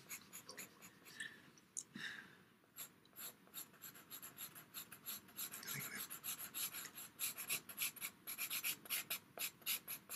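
Pastel pencil scratching on PastelMat pastel paper in short, quick strokes. The strokes are faint and sparse at first, then come steadily and busier from about three seconds in.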